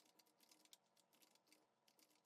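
Very faint computer keyboard typing: a quick run of light key clicks.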